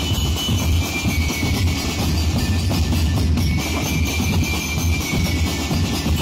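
Street drum-and-lyre band playing an Ati-Atihan drumbeat: massed bass drums and snare drums pounding continuously, with bell lyres ringing a few held high notes above.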